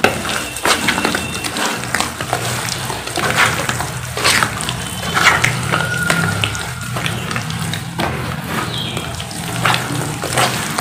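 Wet cement paste being squeezed, kneaded and slapped by hand: irregular wet squelches and splats, one after another.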